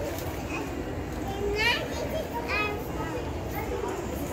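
Two short, high-pitched squeals from a child, about a second apart, over a background murmur of voices.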